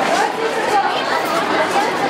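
Several people talking at once: a steady hubbub of overlapping, indistinct voices, men and women.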